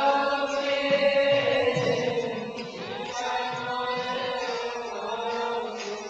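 Voices chanting a devotional melody, with long held notes that slide in pitch.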